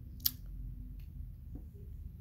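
A sharp click about a quarter of a second in and a fainter click about a second in, over a low rumble of handling noise.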